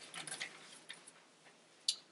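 Sheets of paper being handled and turned at a lectern: a few soft, brief rustles, then one short sharp click near the end.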